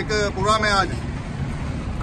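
A man's voice for about the first second, then a steady, unpitched noise, most likely a passing motor vehicle on the street.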